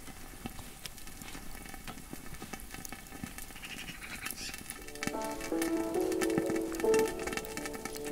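Crackling and sizzling from a lidded pan heaped with burning coals, full of small quick pops. Background music with a plucked melody comes in about five seconds in and plays over it.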